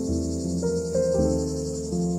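Soft background music, with sustained keyboard notes changing every half second or so, over a steady high-pitched buzzing shimmer.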